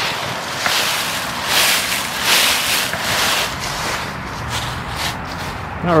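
Footsteps through a thick layer of fallen dry leaves, a rustling crunch with each step at an easy walking pace.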